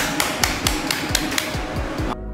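A short percussive music sting: a rapid run of sharp hits, about four a second, over a dense hiss, with low booming thuds that drop in pitch. It cuts off abruptly at the end.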